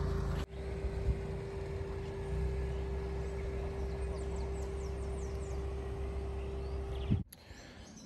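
Steady outdoor background noise: a low rumble with a faint steady hum running under it, and a few faint bird chirps about four to five seconds in. It drops away suddenly near the end.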